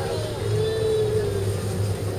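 A motor vehicle going by slowly: a steady engine drone whose pitch rises a little and falls back, over a low steady hum.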